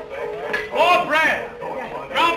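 Men's voices speaking at a dinner table, with a steady background tone of film music underneath.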